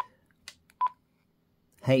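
Quansheng UV-K6 handheld radio's keypad beep as its menu buttons are pressed: two short single-pitch beeps a little under a second apart, with a faint tick between them.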